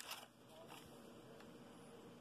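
Near silence: faint room tone, with a brief click right at the start.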